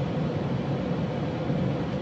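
Steady hum and hiss of a parked car idling, heard from inside the cabin.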